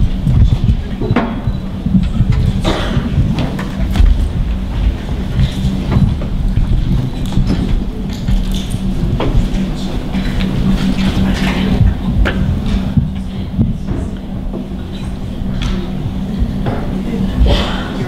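Hall ambience during stage setup before a performance: scattered voices murmuring, occasional knocks and thumps, and a steady low electrical hum throughout.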